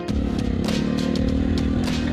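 Honda ATC three-wheeler's single-cylinder four-stroke engine running at a steady speed, with a few light ticks.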